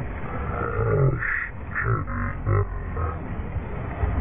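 Waves washing against rocks, with wind buffeting the microphone, and a person's voice making several short grunting sounds in the middle.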